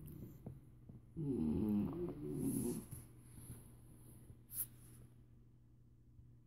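A dog snoring steadily in a low, continuous drone. A louder murmured 'mm-hmm' sits over it from about a second in, with a faint click near the end.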